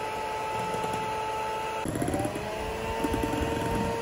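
Electric hand mixer whipping cream in a glass bowl, its motor running with a steady whine. A little under halfway the whine breaks and climbs back to a slightly higher pitch, with a light rattle of the beaters in the bowl.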